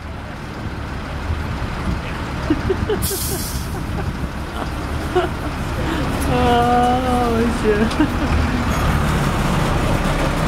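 A minibus's diesel engine idling steadily at a stop, with a short sharp hiss of air, like a brake or door air release, about three seconds in.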